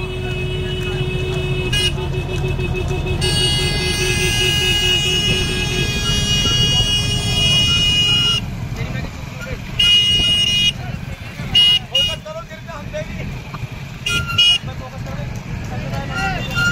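Motorcycle engines and road rumble from a crowd of bikes riding together, with vehicle horns honking: a long blast from about three seconds in to about eight seconds, then short toots a few times after.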